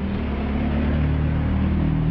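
A steady low engine rumble with a faint hiss above it, unbroken throughout.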